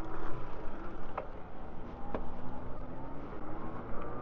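Riding an e-bike along a paved path: wind rumbling on the microphone and tyre noise, with a faint electric motor whine. Two light clicks come about a second apart.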